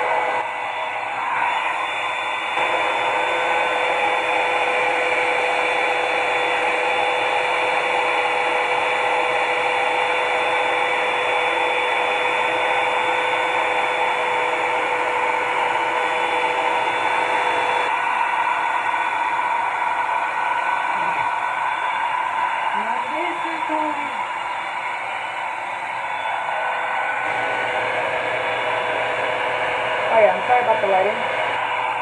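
A Revlon One-Step hot-air brush dryer runs continuously as it is drawn through the hair, making a steady whir and rush of air. Its tone shifts slightly a few times.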